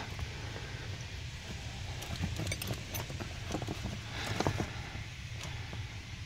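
Scattered small clicks and knocks of hands handling and positioning a work light, over a steady low hum.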